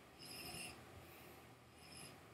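A faint sip from a glass of whisky: a short hiss of air drawn in with the liquid about half a second in, with a weaker one near the end.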